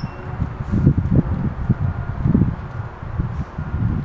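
Wind buffeting the microphone in irregular gusts of low rumble.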